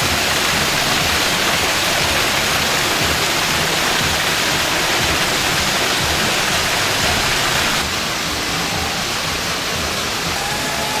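Water cascading over a rock waterfall: a steady, dense rushing splash that drops slightly in level about eight seconds in.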